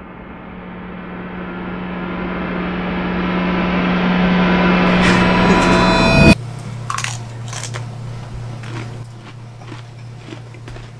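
Reverse-cymbal swell sound effect, rising steadily in loudness for about six seconds and cutting off suddenly. Then quieter room sound with a low steady hum and a few sharp clicks.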